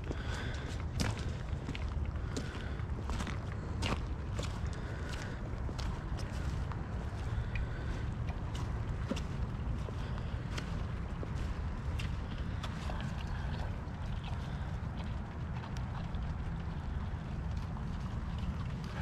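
Footsteps through wet grass with scattered light clicks and rustles, over a steady low rumble of wind on the microphone.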